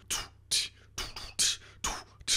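Vocal percussion: a man beatboxing a drum beat with his mouth, about five short hissing hi-hat/snare-like strokes roughly every half second.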